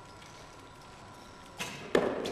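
A bow shot: a sharp snap of the string on release about a second and a half in, then the arrow striking the target a fraction of a second later, louder and echoing in the hall.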